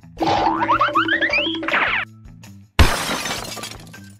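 Comic background music with a run of rising cartoon-style glides, then, almost three seconds in, a sudden loud crash that trails off over about a second: a man slamming into a glass door.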